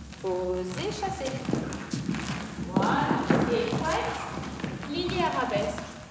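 A woman's voice singing the tune and rhythm of a ballet combination without clear words, in a sing-song, gliding voice. Dancers' light steps tap on the studio floor under it.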